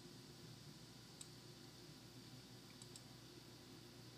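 Near silence: faint room tone with a few faint computer mouse clicks, one sharper about a second in and a close pair near the three-second mark.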